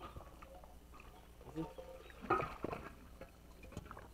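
Quiet outdoor background with a faint, distant voice briefly a little past halfway.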